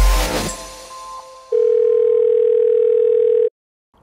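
Intro music fading out, then a single steady electronic beep tone, mid-pitched, held for about two seconds and cut off abruptly.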